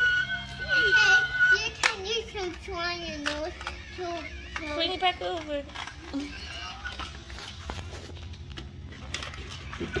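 A young child's voice making wordless sounds for about the first six seconds, with several sharp clicks of plastic toy pieces later on.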